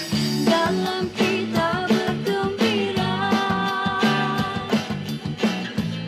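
A small band playing a song: a woman singing over acoustic guitar, electric bass and electronic drum-pad percussion keeping a steady beat.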